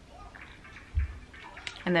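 A single short, dull thump about a second in, from handling as the nail drill handpiece's bit-lock collar is twisted, over quiet room tone.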